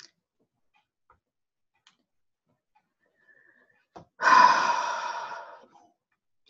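Near silence, then about four seconds in a woman gives one long, breathy exhale, a sigh into the microphone that starts strong and fades away over a second and a half.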